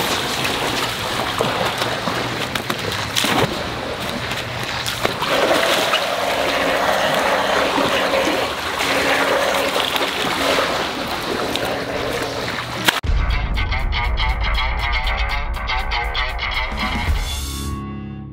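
Water splashing and pouring from a landing net as a large koi is scooped up and lifted out of shallow water. About 13 s in, this cuts off abruptly and music with heavy bass starts, fading out at the end.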